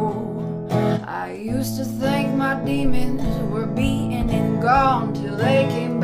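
Wooden-bodied resonator guitar strummed in steady chords, with a woman singing over it.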